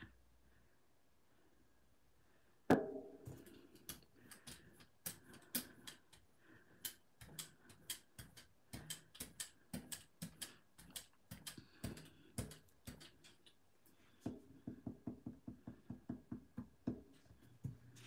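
A paintbrush dabbing acrylic paint onto a gel printing plate: one sharp knock about three seconds in, then a run of soft, irregular taps and clicks that quicken to about five a second near the end.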